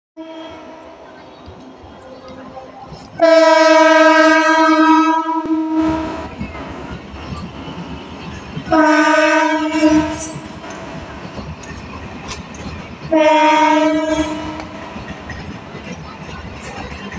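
Locomotive horn of an Indian Railways passenger train sounding three times: a long blast of about two and a half seconds, then two shorter blasts roughly five and four seconds later. Under and between the blasts, the rumble and clatter of coaches rolling past on the track, starting about six seconds in.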